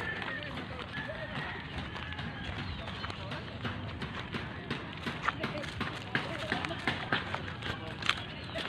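Footsteps on a dirt path, sharp steps coming a couple of times a second in the second half, with people's voices talking in the background.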